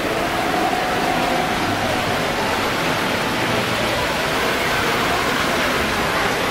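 A steady rushing noise, like running water or air, with a faint distant voice.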